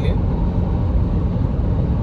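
Steady low rumble of road and engine noise inside the cabin of a car driving at highway speed.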